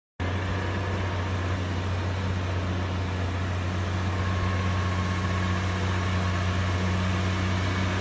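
Heavy truck's diesel engine running steadily: a low, even hum that grows slightly louder about halfway through.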